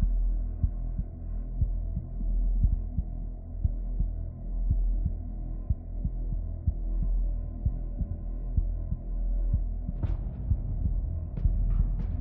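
Dark background score for a promo: a steady low drone with faint held tones under a pulse of deep thuds, about three a second, and a few sharp hits near the end.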